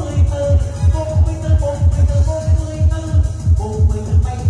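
Upbeat dance music with a heavy kick drum, about three beats a second, under a sustained melody line.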